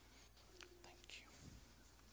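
Near silence: faint whispered voices and small rustles of people moving, with a soft low thump about one and a half seconds in.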